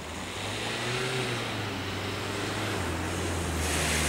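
Road traffic passing close by: car engines and tyre noise, growing steadily louder.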